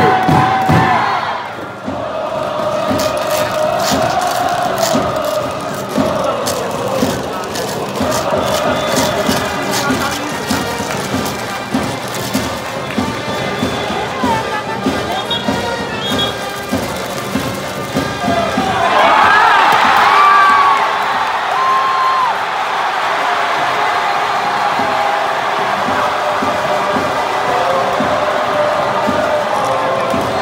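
Large baseball-stadium crowd chanting and cheering in unison, with a steady beat of thumps under it. About two-thirds of the way through the cheering swells louder with high shouts, then settles back into chanting.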